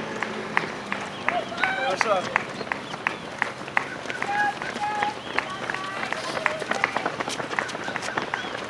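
Running shoes of a passing pack of road racers striking the asphalt in quick, irregular footfalls. Voices break in briefly about one and a half seconds in and again around four to five seconds.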